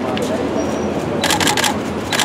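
A rapid burst of about seven camera shutter clicks lasting half a second, a little past halfway, over steady street noise.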